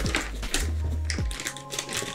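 Background music with low bass notes, over short crisp snips and rustles of scissors cutting open a plastic mailer bag.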